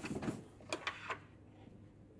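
A wooden trophy base being handled: a quick run of knocks, clicks and scrapes in the first second or so, then it goes still.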